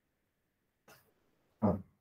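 Near silence, broken about one and a half seconds in by one short, loud vocal sound. A faint tick comes about a second in.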